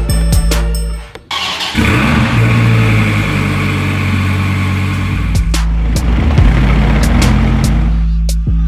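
2017 Dodge Viper's V10 engine starting a little over a second in and running at a fast, steady idle. Music cuts out just before the start and returns with a beat about five and a half seconds in.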